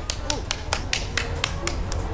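Finger snaps keeping a steady beat, about four a second, with faint voices underneath.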